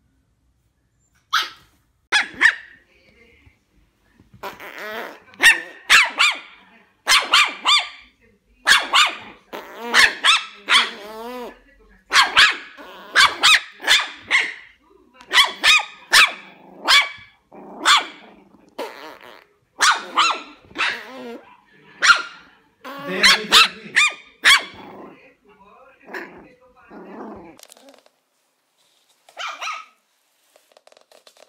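Puppies barking: a long run of short, sharp, high-pitched barks, several a second at their busiest, with some growly ones. The barks start sparsely, become dense for most of the stretch, and then thin out and grow fainter near the end.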